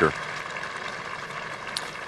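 Steady low outdoor background noise from the spectators around the green, with no single voice standing out and a faint tick near the end.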